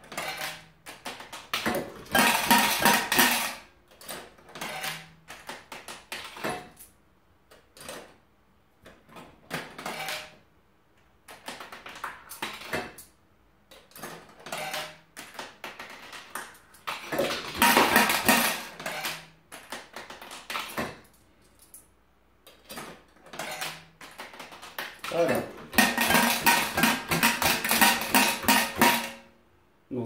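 Lars Berg Spar 7 coin-flick gambling machine being played: coins clicking and clinking through the mechanism, with three longer bursts of metal coins rattling, about two seconds in, around seventeen seconds and from twenty-five seconds on. The last burst is coins dropping into the payout tray.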